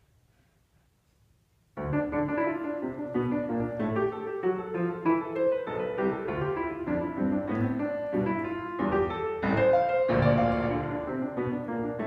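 Near silence for about two seconds, then a grand piano starts playing suddenly and goes on alone in a busy passage of many notes.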